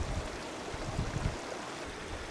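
Steady hiss of rain and wind in the open, with a few low bumps about a second in.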